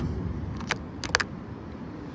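A few short, light clicks, one about two-thirds of a second in and a quick pair about a second in, over a low steady background rumble.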